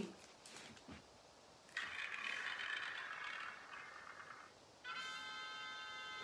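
Number-drawing app on a tablet: a rattling shuffle noise for about three seconds, then a bright chime of steady tones as the drawn number appears with confetti.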